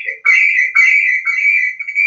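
A loud, steady, high-pitched whistle of audio feedback. The phone's call and the computer's Zoom audio, both joined to the same meeting, are feeding back into each other.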